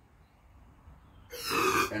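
A short hiss of aerosol Gum Out carb and choke cleaner, about half a second long and starting just past halfway, sprayed into the Briggs & Stratton mower engine's intake as a starting fuel because its carburetor is gummed up from sitting.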